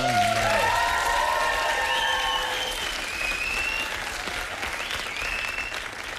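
Studio audience applauding, slowly dying down, with a few held musical notes sounding over it early on.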